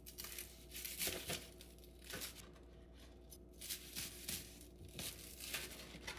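A knife sawing through the crisp toasted crust of a tuna melt sandwich, crunching in short, irregular bursts several times.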